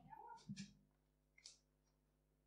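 Near silence from a dropped-out microphone, with a faint, brief distant voice in the first half-second or so.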